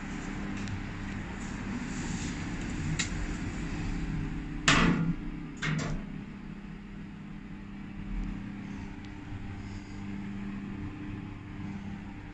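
Inside an Otis passenger lift car: a steady low hum, with two sharp clunks just before the middle as the car is set going, then the lift travelling upward.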